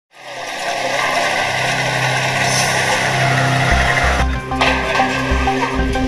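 Dramatic news intro music laid over a dense rushing, engine-like noise, with a pulsing deep bass beat coming in a little past halfway.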